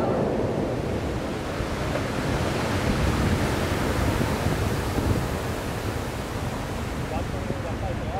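Water of the Fountains of Bellagio's jets falling back into the lake as the jets die down: a steady rushing hiss of spray and splashing that slowly eases.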